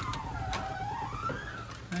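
Hotel room door swinging open, its hinge or closer giving one long squeak that falls and then rises in pitch.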